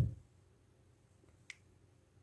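A dull handling thump right at the start that dies away quickly, then one small sharp click about a second and a half in; quiet room tone in between.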